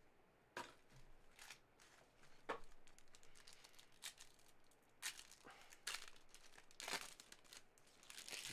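Foil wrapper of a Panini Clearly Donruss football card pack being torn open and handled by hand: faint, scattered crinkles and short tearing crackles.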